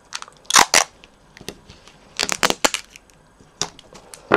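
Clear sticky tape being pulled and torn, then pressed down onto card, in short crackly bursts: a close pair about half a second in, a cluster of several just after two seconds, and one more near the end.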